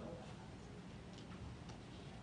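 Quiet room tone with a low hum and a few faint clicks.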